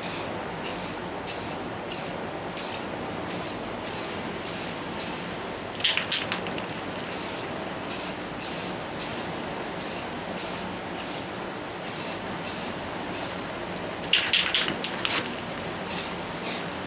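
Rust-Oleum Rust Reformer aerosol can spraying in short hissing bursts, about two a second, with a break about six seconds in and again near the end. This is the first coat of rust-sealing primer going onto the seat brackets.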